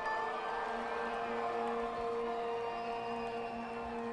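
Live band's sustained instrumental drone: two steady held notes at a moderate, even level, with no singing or drums, a quiet link between songs.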